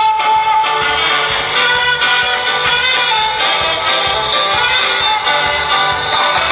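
Carnival dance music from a band, playing continuously with a steady beat.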